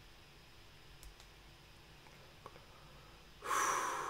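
Faint room tone with a few small clicks, then near the end a sudden loud rush of breath close to the microphone, a sharp exhale that fades over about a second.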